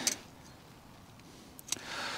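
Quiet background with a few light clicks and a soft rustle of handling near the end.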